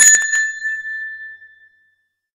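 A bell-ding sound effect: one bright ring of a small bell that fades away over about a second and a half.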